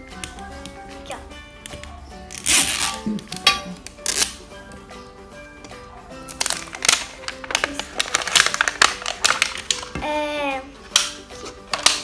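Background music, with irregular bursts of crinkling and rustling as the plastic wrapping of an LOL Surprise ball is picked at and peeled by hand, loudest from about two and a half seconds in and again from six to nine seconds.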